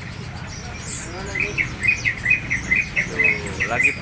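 A caged songbird chirping a rapid run of short, high notes, about five a second, starting a little over a second in.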